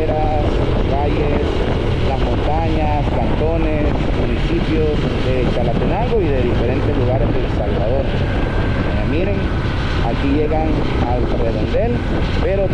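Steady rush of wind on a motorcycle rider's microphone with the motorcycle's engine running at road speed, and a man's voice talking over it in snatches.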